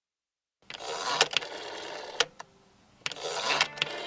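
Song intro: a dense, clicking mechanical noise starts just under a second in, drops away briefly around the middle, then returns as low held music notes come in near the end.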